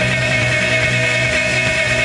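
Live rock band playing: electric guitars in a dense, steady wash of sound with one long held note.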